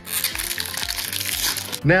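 A hockey-card pack wrapper being torn open and crinkled by hand: a dense run of crackling and rustling for nearly two seconds. It stops just as the cards come out.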